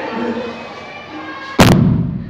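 A hydrogen-filled balloon ignited by a flame on a long stick, exploding with one sudden, loud bang about a second and a half in.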